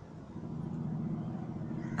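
A motor vehicle's engine running: a low, steady hum that grows a little louder.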